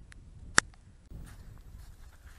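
Low wind rumble on the microphone with one sharp, short click about half a second in. The background sound changes abruptly about a second in.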